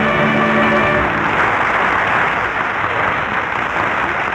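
A studio orchestra's closing held chord ends about a second in, and a studio audience's applause follows.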